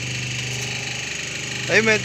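Semi-automatic hydraulic double-die paper plate making machine running with a steady, even hum.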